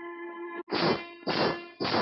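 A soft held musical tone, then three loud metallic percussion clangs about half a second apart, each ringing out as it fades. They open a film song.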